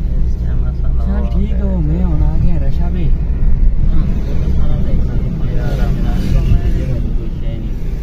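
Car driving on a city road, heard from inside the cabin as a steady low rumble of engine and road noise. A person's voice is heard over it twice, from about a second in and again past the middle.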